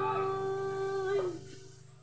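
A girl's voice holds the last sung note of a song steadily over a ringing acoustic guitar chord. About 1.3 s in, the note slides down and stops, and the sound then fades out.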